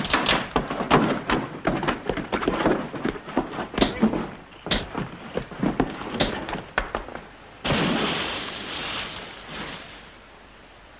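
A rapid, irregular run of knocks and thuds, several a second. Near the end it gives way to a sudden hissing rush that fades over about two seconds.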